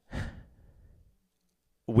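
A man's breath into a close microphone: one short, unvoiced breath just after the start that fades out within a second, then his speech resumes at the very end.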